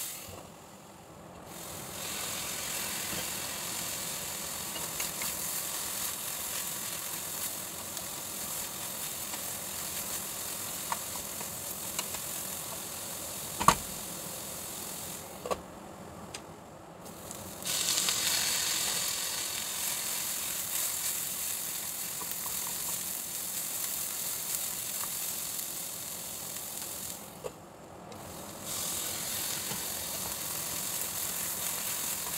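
Chopped bitter gourd and onion sizzling steadily in a covered stainless steel pan. The hiss drops away briefly three times, and there is one sharp click about 14 seconds in.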